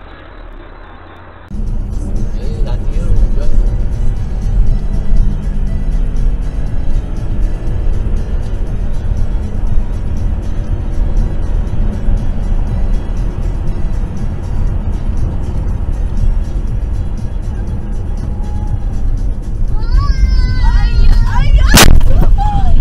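Faint road noise, then loud music with heavy bass playing inside a moving car. Near the end there is a brief high squealing, then one sharp, very loud bang of a collision.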